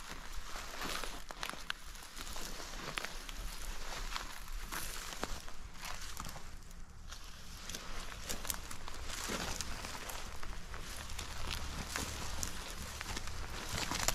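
Footsteps through tall dry grass and weeds: an irregular run of swishing, crunching and crackling stems underfoot.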